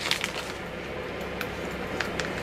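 Steady blowing and whirring of an electric room heater, with a few faint clicks and crinkles of a plastic bag being handled.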